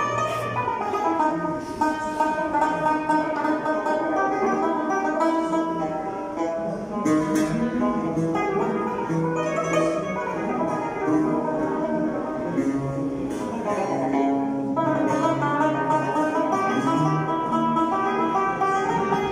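An ensemble of plucked string instruments, a lute with banjos and an acoustic guitar, playing an instrumental passage together.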